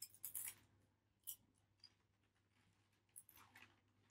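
Near silence with no music: a faint low hum and a few short clusters of faint clicks or snips, the first just at the start, then two single ones, and another cluster near the end.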